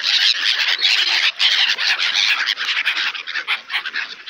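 Loud, continuous close rustling and flapping as a flock of black-headed gulls beat their wings and jostle for thrown bread, with rapid flutters throughout.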